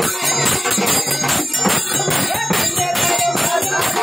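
Live Marathi devotional folk music for Khandoba, carried by a dense, rapid percussion beat with a melodic line over it.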